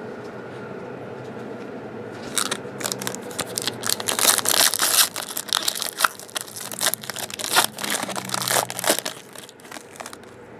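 Foil trading-card pack wrapper being torn open and crinkled by hand. A dense run of sharp crackles and rips starts about two seconds in and lasts until near the end.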